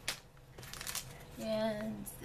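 A greeting card in a cellophane sleeve handled on a cutting mat: a sharp tap, then a short crinkling rustle of plastic. A brief voiced syllable follows near the end.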